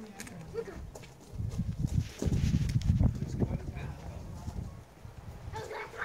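Wind buffeting the camera microphone: an uneven low rumble, strongest in the middle, with faint voices.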